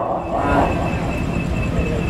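Steady background noise with a low hum and a faint high tone pulsing about four times a second.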